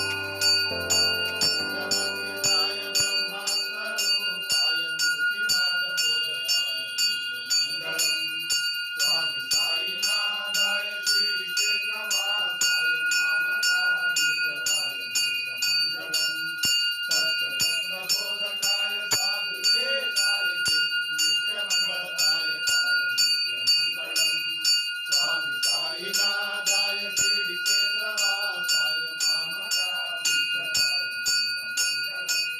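Temple bell rung continuously in a fast, even rhythm of about three strokes a second during aarti worship, its high ring sustained between strokes, with voices chanting underneath.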